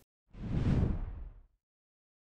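Whoosh transition sound effect: a single swell of noise that rises and dies away over about a second, then silence.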